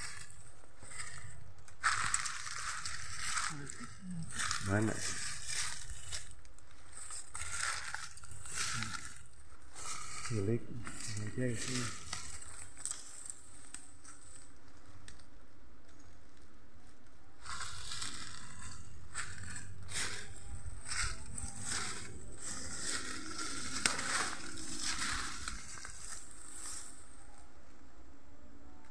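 Dry bamboo leaves and litter rustling and crackling as someone pushes and steps through a bamboo clump. The sound comes in two long stretches of close, irregular crackling with a calmer gap in between.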